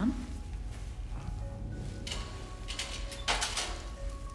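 Latex gloves rustling as they are pulled on, in two bursts about two seconds in and just past three seconds, the second louder. Underneath is a low droning film score with a few held tones.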